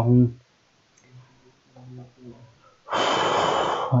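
A man's voice trails off on a word, followed by faint low murmuring, then a loud breath blown out into a close microphone lasting about a second near the end.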